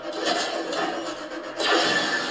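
Sci-fi action sound effects from a TV episode's soundtrack playing in the room: a steady noisy rush that gets louder near the end, over faint music.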